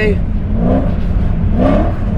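Straight-piped, naturally aspirated V8 of a Mercedes C63 AMG Black Series heard from inside the cabin: a steady low rumble with the revs rising twice as the throttle is worked to hold a drift on ice.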